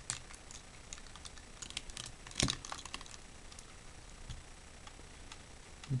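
Small plastic clicks and knocks from a G1 Transformers Triggerhappy toy's parts being moved and snapped into place by hand, scattered and irregular, with one louder knock about two and a half seconds in.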